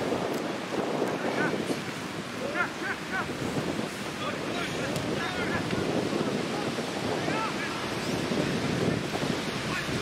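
Wind buffeting the microphone in a steady rumble, with short, scattered distant shouts from the pitch.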